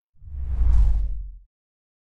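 A whoosh sound effect in an animated title sequence, swelling up and fading away over about a second.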